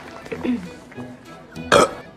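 A burp in the cartoon's soundtrack over soft orchestral background music, followed near the end by a sudden loud burst.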